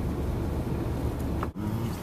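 Steady low rumble of a car's engine and tyres heard from inside the cabin while moving slowly in traffic. The sound drops out for an instant about one and a half seconds in.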